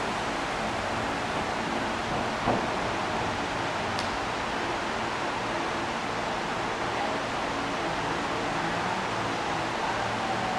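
Steady hiss of a large gym's background noise, with a single thump about two and a half seconds in, the gymnast's feet landing on the spring floor.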